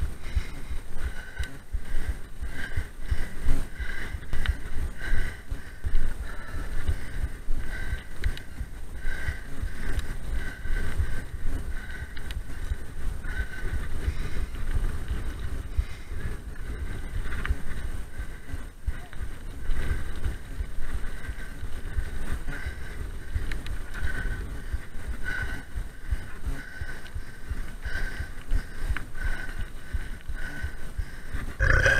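Mountain bike ridden at speed: wind buffeting the on-bike camera microphone over tyre rumble on tarmac, with a faint high squeak repeating about every two-thirds of a second.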